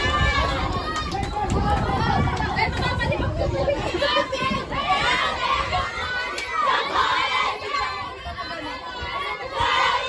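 Crowd of children and spectators shouting and chattering, many voices overlapping, with a louder burst of shouts near the end. A low rumble sits under the voices in the first few seconds.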